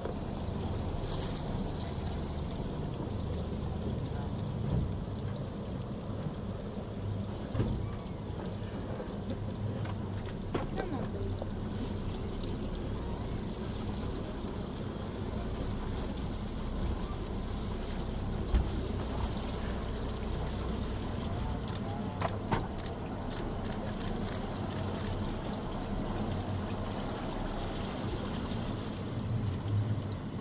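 Steady low rumble of a boat's engine running on calm water, with a few knocks and a quick run of clicks about three quarters of the way in.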